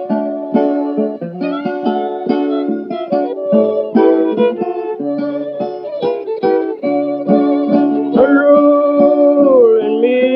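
Acoustic guitar picking the instrumental introduction of a 1920s country blues record, the sound narrow and lacking treble like an old recording. Over the last two seconds a long held note bends down and back up above the picking.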